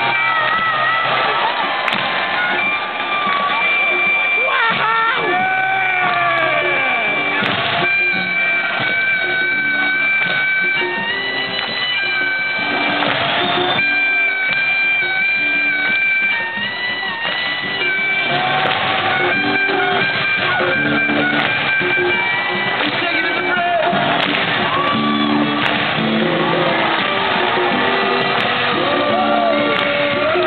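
Live acoustic music from a trio playing acoustic guitars on stage, with held melodic notes over the strummed chords.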